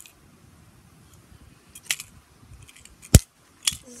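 Sharp metallic clicks from a Victor wooden spring-bar snap trap: a light click about two seconds in, then one loud snap just after three seconds and a smaller one right after it.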